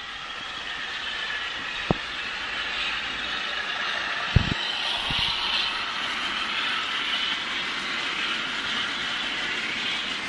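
Sound-fitted DCC model of Class 52 diesel-hydraulic D1067 hauling tank wagons: a steady running sound from the locomotive's sound decoder and the rolling train, with a few sharp clicks as the wagon wheels cross rail joints and points.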